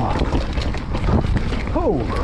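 Wind buffeting a chest-mounted action camera's microphone over the rumble and rattle of a full-suspension mountain bike rolling down a dirt forest trail. Near the end the rider makes a short exclamation.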